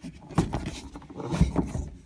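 Handling knocks, rattles and rubbing as the soft top's rear bracket is worked down by hand, which relieves the top's tension. Two louder thumps come about half a second and a second and a half in.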